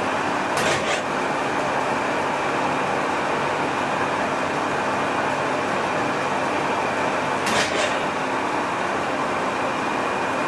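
Colchester Master 2500 geared-head lathe running steadily while a single-point tool cuts a 1.5 mm pitch metric thread in steel. Two brief sharp hisses stand out, one about half a second in and one near the end.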